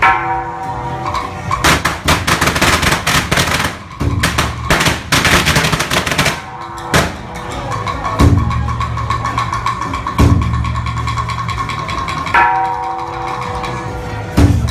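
Temple procession music: a high wind melody over deep drums. From about two to six and a half seconds in, a rapid, irregular run of sharp cracks from a string of firecrackers breaks in.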